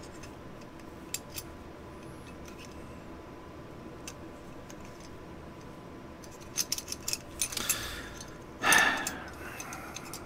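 Small metal clicks and taps from an M1A (M14) trigger group, the hammer and trigger housing, being handled and fitted together during reassembly. The clicks are sparse at first and bunch up a few seconds before the end, followed by a brief louder rustle.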